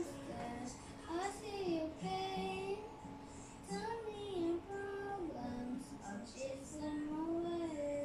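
A young boy singing a slow ballad melody in long, sliding held notes over a karaoke backing track.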